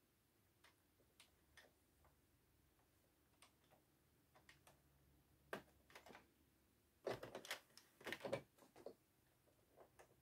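Near silence broken by faint, scattered clicks and taps of a metal wool needle and fingers against the plastic needles of a circular knitting machine as stitches are lifted and moved by hand, with a denser run of clicks a little past halfway.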